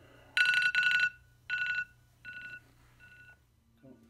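Digital alarm clock beeping with a high electronic tone: two quick beeps, then three more, each fainter than the one before.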